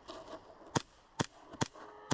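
Three sharp airsoft pistol shots, about half a second apart.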